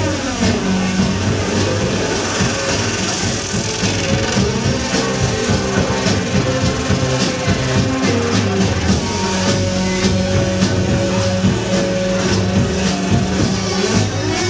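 Live band playing on drum kit, electric bass, guitar and keyboard, with steady drum strikes under long held notes.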